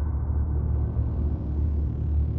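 Deep, steady rumbling drone from a film soundtrack, with a rising whoosh swelling in from about half a second in as the logo comes up.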